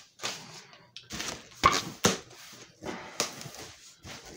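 Packing paper rustling and crinkling as it is handled, in a run of short bursts, with two sharp knocks just under half a second apart about halfway through that are the loudest sounds.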